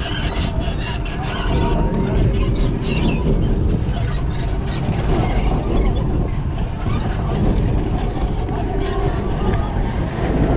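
Roller coaster train running on steel track, heard from a seat on board: a steady rumble of the wheels with wind rushing over the microphone.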